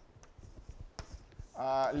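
Chalk writing on a blackboard: a few short, sharp taps and strokes of the chalk against the board. A man's voice comes in near the end.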